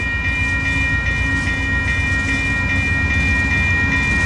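VIA Rail passenger train led by GE P42DC locomotive 916 running through a level crossing with a steady low rumble. Over it the crossing's warning bell rings about three to four strikes a second.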